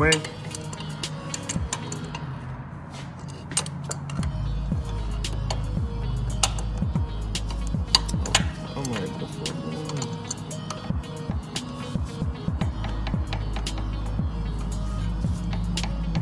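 Irregular metallic clicks and clinks of a socket wrench being worked on a car's outer tie rod end nut, over steady background music.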